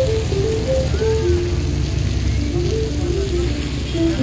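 Background music: a simple melody of short stepping notes over a steady low bass.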